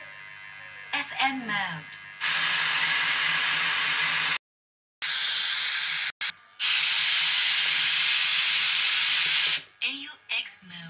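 Steady loud hiss with a low mains hum under it from the speakers of a home-wired 4440 dual-IC amplifier, powered up with no signal playing. It cuts off and comes back once; a brief gliding voice-like sound comes before it.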